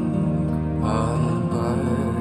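Music with a slow sung or chanted melody over sustained tones, played back through a copy loudspeaker fitted with a Bose logo; the voice comes in about a second in.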